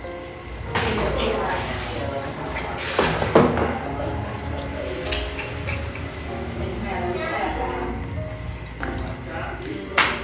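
Background music with steady held notes, and a short loud noise about three seconds in.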